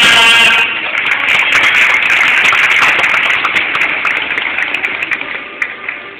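Audience clapping, slowly fading, with music playing underneath.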